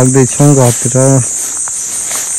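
A steady high-pitched chorus of insects in the vegetation, with a man's voice speaking over it for about the first second.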